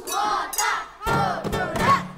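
A group of children shouting together, two loud calls about a second apart.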